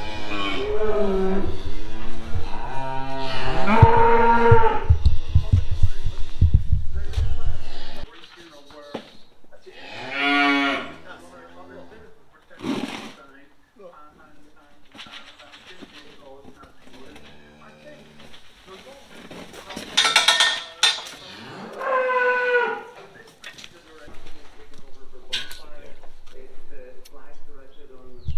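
Cattle mooing: several loud calls over a low rumble in the first eight seconds, then single moos about ten, twenty and twenty-two seconds in.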